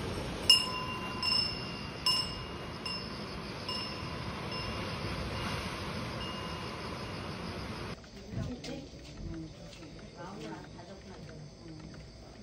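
Korean temple wind bell (pungyeong) hanging from the eaves, rung by its fish-shaped wind vane about seven times in six seconds, each clear metallic ring fading away, over a steady rush of surf. About eight seconds in the sound cuts to a quieter background.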